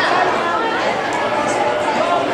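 Several people talking at once, a steady jumble of overlapping voices with no single voice standing out.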